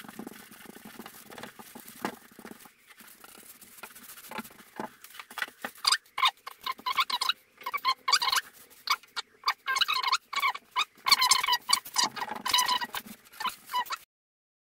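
Hands rubbing and pressing epoxy-wetted fiberglass tape into a plywood corner: a rapid, irregular scratching and crinkling, louder from about six seconds in. Before that, fainter scraping of a brush spreading epoxy.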